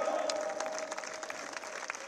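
A large crowd applauding, heard faintly and at a distance through the podium microphones as many scattered, overlapping claps. A faint steady tone runs underneath.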